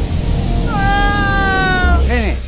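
A man's long, high scream, starting a little way in and sliding slowly down in pitch, over a deep rumbling music bed.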